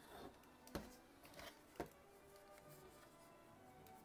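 Near silence with two faint clicks from the plastic Razer Man O' War wireless headset being handled while its power button is pressed and held, one under a second in and one just under two seconds in.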